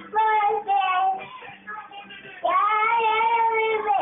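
High-pitched singing: a short phrase of a few notes in the first second, then one long held note from about two and a half seconds in.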